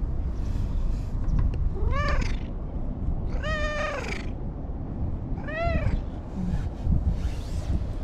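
Orange-and-white cat meowing three times, the middle meow the longest, over a steady low rumble.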